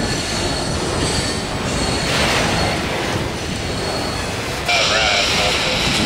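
Freight train cars rolling slowly past, their wheels running on the rails with a thin, high steady squeal. Near the end a burst of scanner radio hiss with a faint voice cuts in.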